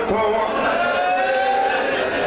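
A man's voice through a microphone and loudspeaker holding one long, slowly rising chanted note, in the lamenting style of a masaib recitation.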